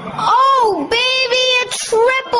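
A high-pitched voice singing short notes, some arching up and sliding down, others held level, in quick phrases with brief breaks between them.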